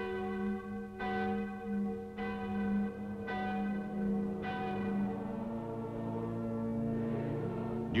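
Church-style bells struck about once a second, five strikes that ring on and fade, over a sustained low held chord; the strikes stop after about four and a half seconds and the chord moves lower soon after.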